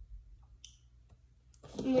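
Near quiet, broken by one short, light click about two-thirds of a second in, with a couple of fainter ticks around it; a girl starts speaking near the end.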